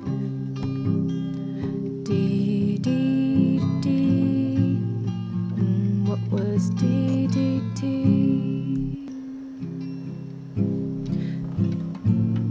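Music: acoustic guitar accompaniment of an original song, playing continuously.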